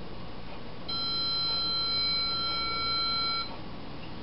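A steady high electronic tone, like a beep, held for about two and a half seconds from about a second in and cutting off abruptly.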